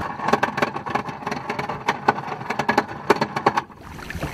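Yamaha 225 outboard motor running on a moving inflatable boat, with a scatter of irregular sharp knocks and clicks, fading a little near the end.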